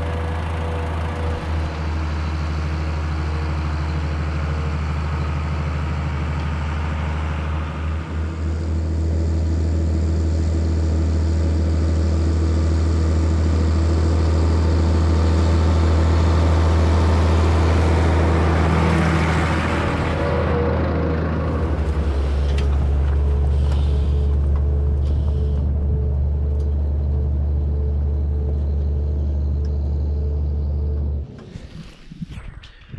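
Case IH 1455 tractor's six-cylinder diesel engine running steadily at working speed while pulling a trailed field sprayer. The drone grows louder past the middle as the tractor comes close, and its tone shifts a little after two-thirds in.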